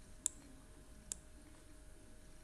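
Two sharp computer mouse button clicks, a little under a second apart: the button pressed and released while dragging a window on screen.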